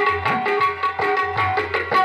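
Tabla played in a brisk, steady rhythm, the deep bass strokes of the bayan swelling and bending upward in pitch, over sustained harmonium notes: instrumental accompaniment with no singing yet.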